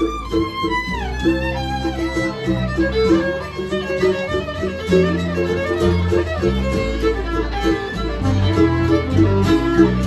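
Fiddle playing an instrumental break over a plucked string accompaniment with a low bass line. About a second in, a held fiddle note slides down into a run of shorter notes.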